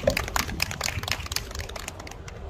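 A quick, irregular run of small sharp clicks and taps, thinning out near the end, from saxophonists settling their instruments and music stands before starting to play.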